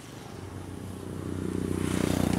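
A motorcycle engine running as it approaches on the road, growing steadily louder toward the end.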